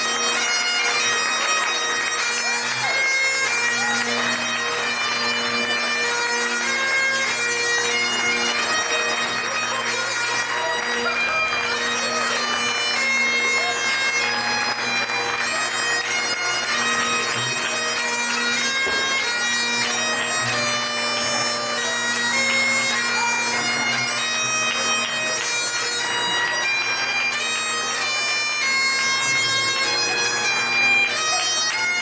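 Bagpipes playing a continuous tune, the melody notes changing quickly over the steady hum of the drones.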